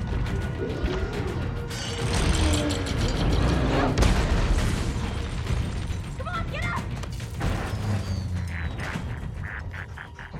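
A film's action sound mix: music under booms, crashes and mechanical clatter. The loudest stretch comes in the middle, with a sharp hit about four seconds in.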